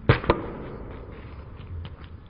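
A claw hammer smacking a whole orange on a hard floor: two sharp knocks a fraction of a second apart, the first the louder.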